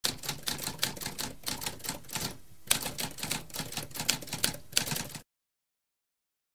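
Typewriter keys being struck in a rapid, uneven run of clicks. The typing pauses briefly about halfway, resumes with one louder strike, and cuts off suddenly about five seconds in.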